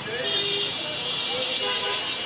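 Busy street traffic with a vehicle horn sounding, a steady high tone starting about a quarter second in, over people talking.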